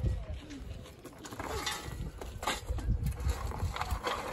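Lumps of coal scraping and clattering as they are scooped from a coal heap with a metal hand shovel, with sharper rattles about one and a half and two and a half seconds in.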